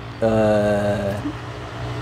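A person's voice holding one level hum, a drawn-out 'mmm', for about a second, over a faint steady low hum.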